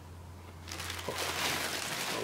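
Clear plastic packaging bag crinkling as it is pulled back off the foam-packed model jet's fuselage, starting about a third of the way in. A steady low hum runs underneath.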